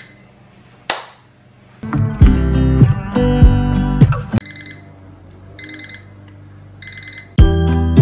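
A short beep and a click as the toaster oven is set, then background music. The music gives way to the toaster oven's end-of-cycle alarm, three groups of high beeps about a second apart, signalling the toast is done. The music comes back in near the end.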